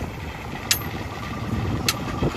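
Công nông farm truck's single-cylinder diesel engine running with a steady low rumble, and two sharp clanks a little over a second apart.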